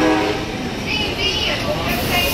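Amtrak passenger train rolling past close by as it pulls into the station, its cars and wheels giving a steady rumble. A steady horn tone ends just after the start.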